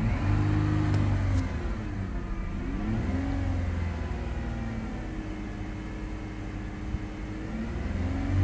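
A Dodge Grand Caravan's 3.6-litre Pentastar V6 held at raised revs under light throttle, the pitch dipping and climbing back about three seconds in, then running a little quieter. The revs are raised to bring the engine up to temperature so the new thermostat opens and air bleeds out of the freshly refilled cooling system.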